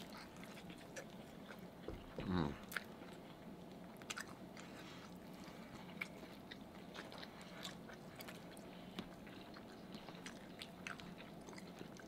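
Close-up eating sounds: faint chewing and biting, with small crunches and mouth clicks from fried egg rolls and noodles. One louder sound about two seconds in falls in pitch.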